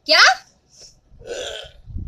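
A woman's sharp spoken 'kya?' at the start. About a second and a half in comes a man's short, rough gagging croak as a hand squeezes his throat in a mock choking.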